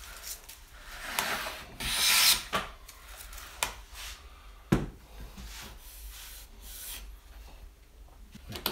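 Low-angle bevel-up jack plane taking one stroke along a softwood board, cutting a very thin shaving, about a second in. Then a few knocks as the metal plane is handled and set down on the wooden bench, the sharpest about halfway through.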